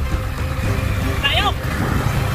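Steady low rumble of wind buffeting and a motorcycle engine running while riding, with a brief voice sound about a second and a half in.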